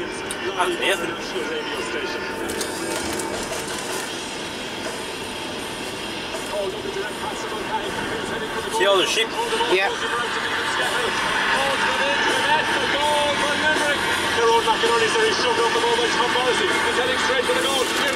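The radio playing in a Mercedes-Benz Sprinter van's cab, broadcast voices and music, over the steady engine and road noise of the van driving. The radio gets louder and busier about ten seconds in.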